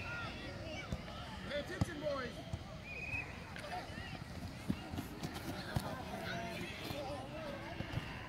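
Faint distant voices calling out, spectators and young players, with a few short knocks scattered through.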